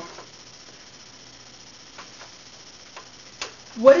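Quiet room tone with a faint low hum and a few soft, isolated clicks about two and three seconds in, then a voice begins just before the end.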